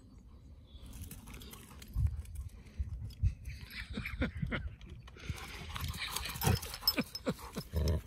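A chocolate Labrador moving about, with irregular soft thumps and a spell of rustling about three-quarters of the way through.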